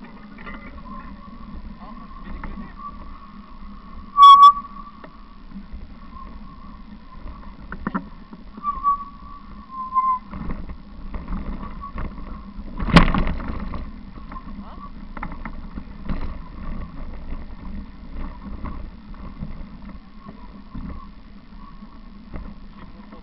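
Bicycle rolling along a dirt forest track, with steady rumble and small rattles. There is a short, sharp, very loud squeak about four seconds in and a loud knock about halfway through.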